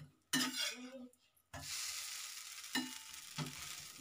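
Dosa sizzling on a hot tava: a steady hiss that sets in about one and a half seconds in. A metal spatula scrapes and taps on the griddle, briefly near the start and twice more near the end.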